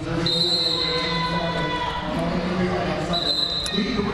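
Referee's whistle blown to start a roller derby jam, a sustained high blast just after the start and another near the end, over the echoing hubbub of the crowd and skaters in a large hall.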